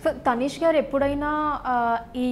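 Speech only: a woman's voice talking, in drawn-out, sliding phrases.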